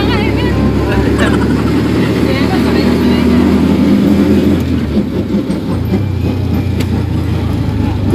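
Mini jeepney's engine and road noise heard from inside its open-sided passenger cabin while driving: a steady low drone.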